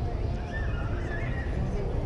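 Distant voices of passers-by, with a high, wavering call about halfway through, over a low rumble.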